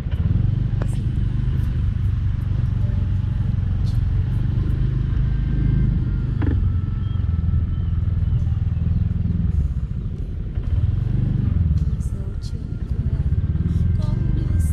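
Motorbike engine running steadily at low speed, easing off briefly twice in the second half.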